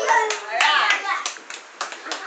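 Hand clapping in uneven sharp claps, roughly four a second, at the end of a children's classroom song, with a voice calling out briefly in the first second.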